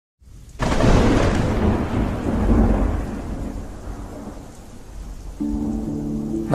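A thunderclap breaks out about half a second in and rolls on, slowly fading, over rain. A held music chord comes in near the end.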